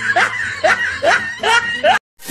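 A person laughing in short repeated bursts, about two a second, cut off abruptly at the end.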